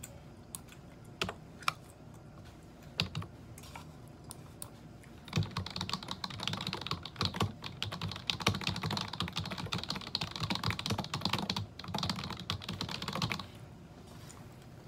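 Computer keyboard being typed on: a few scattered keystrokes, then fast continuous typing from about five seconds in, with a brief pause, stopping shortly before the end.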